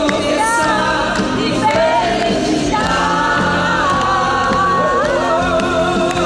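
Live pop song: a woman's lead voice holds long notes with vibrato over the band, with backing vocals.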